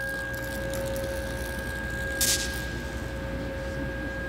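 Steady ringing tones held over a low rumble, with one short burst of hiss a little after two seconds in.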